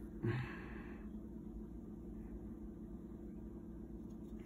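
A short, soft exhaled breath about a quarter second in, then quiet room tone with a low steady hum.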